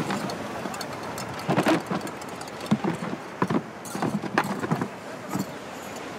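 A run of short, hard clacks at uneven intervals, several over a few seconds, bunched toward the middle and fading out near the end.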